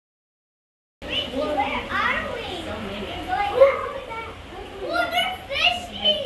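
Silence for about the first second, then children's voices talking and calling out.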